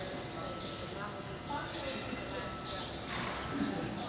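Hoofbeats of Arabian horses trotting on dirt arena footing, with people talking in the background.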